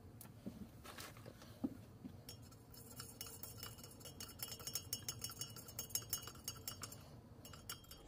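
Wooden stir stick stirring coffee in a double-insulated stainless steel tumbler, faintly clinking against the inside wall in a quick run of light clicks that starts about two seconds in and stops near the end, after a few scattered light knocks.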